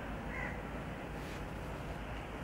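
Steady outdoor background noise with one short, harsh bird call about half a second in.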